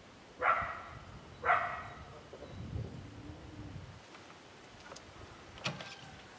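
A dog barking twice, about a second apart, over a steady outdoor background hiss, followed by a single sharp click near the end.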